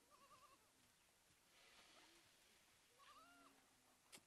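Near silence, with two faint wavering animal cries: one at the start and one about three seconds in.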